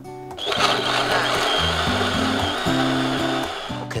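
Small electric blender running, pulping water-soaked torn paper into a slurry. It starts about half a second in, runs steadily with a high whine, and stops just before the end.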